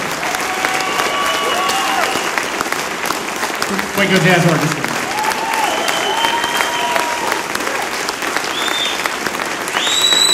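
Concert audience applauding steadily, with a shouted cheer about four seconds in and a few whistles on and off.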